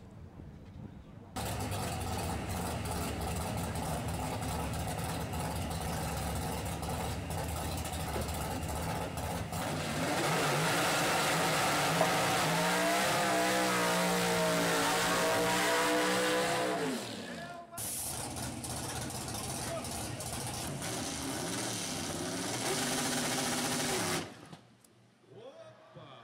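Ford Maverick drag car's engine running loud from about a second in, then revving harder with a wavering, rising and falling pitch through a tyre-spinning burnout. After a brief break it runs again until it drops away near the end.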